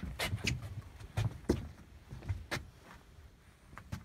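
Handling knocks and bumps as a redfish on a metal lip-grip is set down on a fiberglass boat gunwale: short, sharp knocks in three quick pairs about a second apart, over a low rumble.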